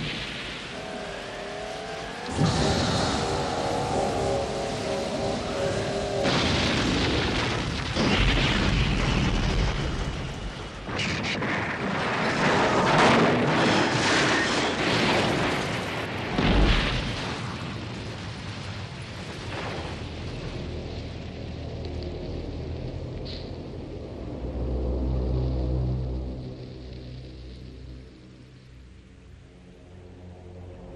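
Film sound effects of an aircraft crashing in a thunderstorm: a brief pitched whine, then a long, loud stretch of crashing and explosions over rain, with a heavy low impact about sixteen seconds in. After that it dies down to rain, and sustained background music comes in for the last few seconds.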